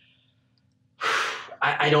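A short breathy sigh about a second in, after a moment of near silence, followed by a person starting to speak.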